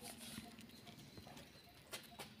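Near silence: a few faint scattered taps and clicks, with one sharper click near the end.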